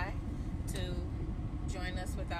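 Steady low rumble of a car heard from inside the cabin, under a woman's speech.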